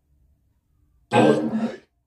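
A man's short, loud throat-clearing cough, once, about a second in, after a near-silent pause.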